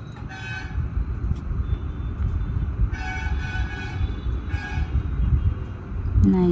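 Vehicle horn honking three short times over a steady low rumble of road traffic.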